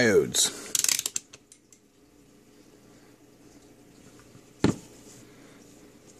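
Clicks and rattles of test probes and gear being handled on a workbench: a quick cluster of clicks about a second in, then one sharp knock near the five-second mark. A faint steady hum runs underneath.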